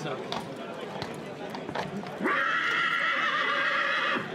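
A horse whinnying once: one long call of about two seconds that starts a little past halfway and is the loudest sound here.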